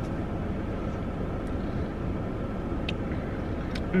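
Steady low rumble of background noise inside a car's cabin, with a few faint clicks.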